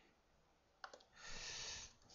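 A single faint click from text editing on a computer about a second in, followed by a soft hiss lasting under a second.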